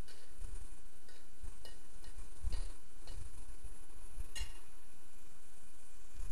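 Metal wok spatula knocking and scraping against a wok about six times at uneven intervals as it stirs kimchi and rice cakes, the loudest knock about four and a half seconds in, over a steady hiss.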